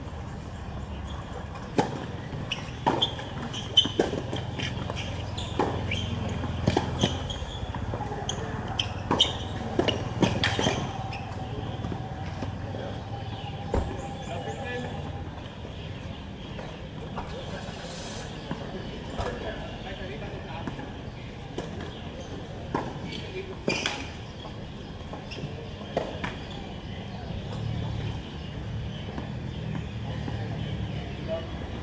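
A tennis rally on an outdoor hard court: sharp racquet strikes on the ball and ball bounces over about the first ten seconds, then a few scattered ball bounces later on. Voices can be heard as well.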